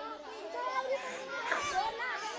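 Children playing: several children's voices talking and calling out over one another.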